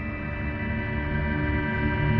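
A steady droning hum of several held tones over a low rumble, growing louder.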